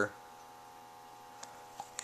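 Quiet room tone with a faint steady hum and two small clicks near the end.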